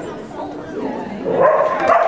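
A dog barking excitedly in the second half, over people chatting.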